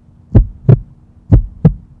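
Heartbeat sound effect: paired low thumps repeating about once a second, over a faint steady hum.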